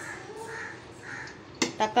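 A crow cawing twice, faint in the background, followed by a short click near the end.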